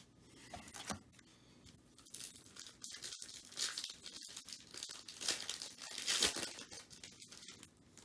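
Trading cards that have stuck together being peeled apart, with faint, irregular tearing and crinkling rasps, busiest in the middle. The card faces are sticky, so the peeling can tear the printed colour off.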